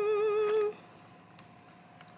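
A person hums one slightly wavering note for under a second, then it goes near quiet apart from a faint steady tone.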